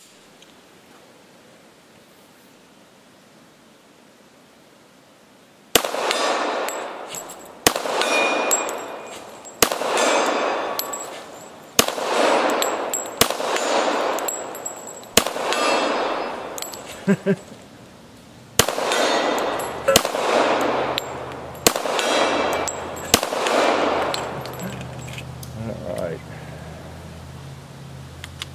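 Colt 1911 WWI re-issue pistol firing .45 ACP, about ten shots spaced a second and a half to two seconds apart, starting about six seconds in, each followed by steel targets clanging.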